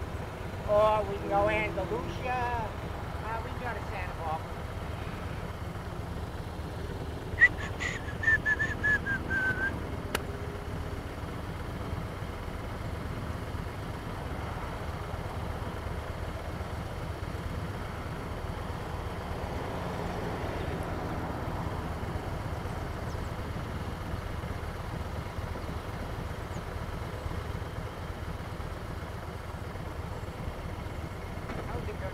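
Motorcycle engines idling at a standstill, a steady low hum. About a quarter of the way in there is a brief high whistle that falls in pitch.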